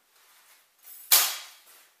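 One sharp crack, like a hard knock or snap, about a second in, dying away over about half a second. Faint rustling comes before it.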